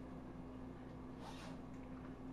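Faint stirring of bean stew with a wooden spoon in a cast-iron Dutch oven, one soft swish about a second in, over a steady low hum.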